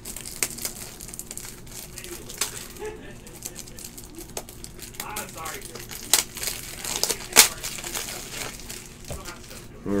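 Crinkling and rustling of trading-card packaging being handled, with scattered sharp clicks and snaps, the loudest about seven seconds in.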